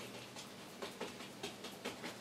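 Faint, irregular ticks and light brushing of an oil paintbrush dabbing paint onto the canvas.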